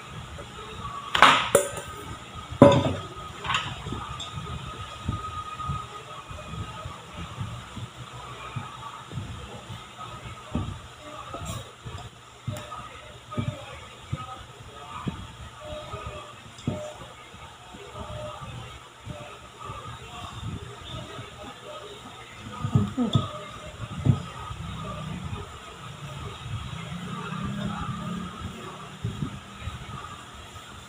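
A small metal bowl knocked twice against the rim of a stainless steel mixing bowl as flour is tipped in, then a silicone spatula stirring flour into cookie dough in the steel bowl, with irregular light scrapes and knocks against the metal sides.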